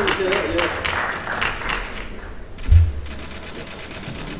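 Audience clapping in an even rhythm, about five claps a second, dying away about two seconds in, followed by a single low thump a little before the end.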